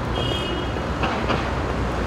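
City street traffic: a vehicle's low engine rumble, with a brief high tone lasting about half a second just after the start.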